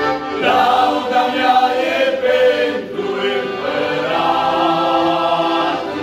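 Small all-male vocal group singing a Christian song in several-part harmony, accompanied by an accordion. There is a short break between two sung phrases a little under three seconds in.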